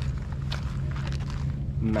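Footsteps on rocky, gravelly ground over a steady low hum.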